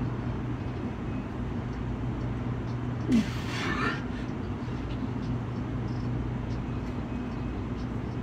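Steady low mechanical hum, with one short, forceful breath and grunt about three seconds in from a man straining through pushups.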